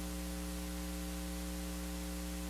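Steady electrical mains hum with a stack of overtones over a light hiss, unchanging in pitch and level.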